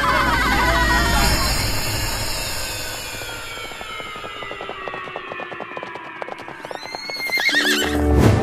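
Cartoon horse arriving: a fast run of hoof clicks, then a whinny near the end as it rears, over a long falling tone.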